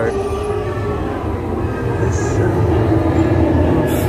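Steady low rumble of a Haunted Mansion dark-ride vehicle moving along its track, with faint, wavering eerie tones from the ride's soundtrack above it.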